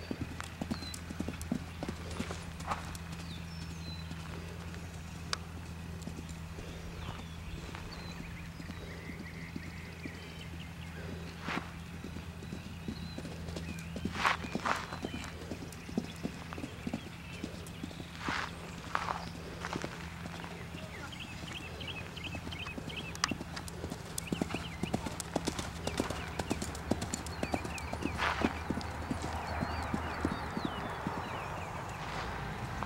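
Hoofbeats of a horse cantering on a sand arena and over jumps, scattered dull knocks with a few louder ones, over a steady low hum.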